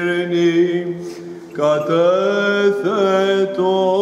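A male chanter singing Greek Orthodox Byzantine chant, one melismatic line of long held, wavering notes. The line thins out about a second in and picks up again with a new phrase half a second later.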